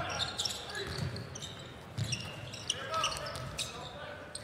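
A basketball being dribbled on a hardwood court, making irregular thumps, with short high sneaker squeaks from players moving on the floor.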